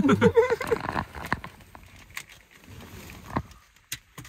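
Men laughing loudly inside a van's cabin for about the first second, then small clicks and handling sounds, with one sharper click late on.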